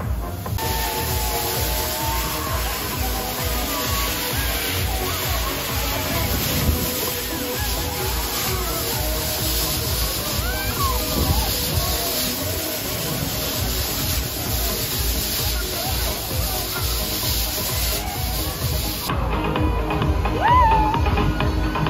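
Fairground ride's dance music playing loud with a steady beat, with riders' voices shouting and screaming over it as the ride spins.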